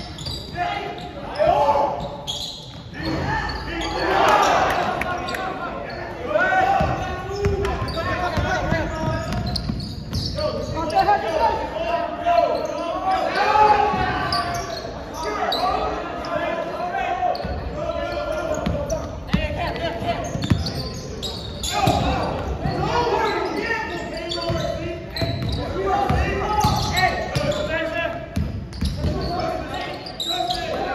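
Basketball game in a gym: a ball bouncing on the hardwood floor with short sharp knocks, amid players' and spectators' voices and shouts, all echoing in the large hall.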